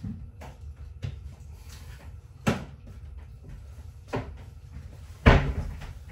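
Kitchen cupboard doors opening and closing and containers being taken out and handled: a string of separate knocks, a sharper one about two and a half seconds in and the loudest, heaviest thump near the end.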